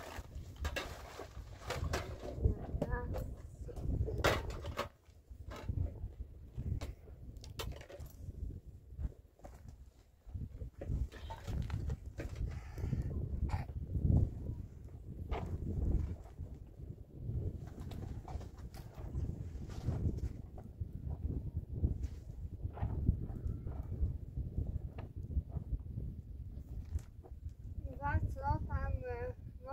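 Irregular knocks and clatter of household things being handled and set down, over a steady low rumble.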